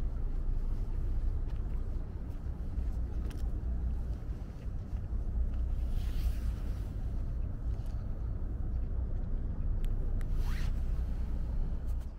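Wind rumbling steadily on the microphone, with a few brief scraping rustles, including a quick swish about ten seconds in.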